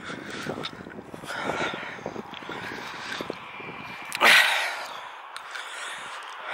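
A walker's footsteps on a grassy track with her breathing, and a short, loud breath about four seconds in.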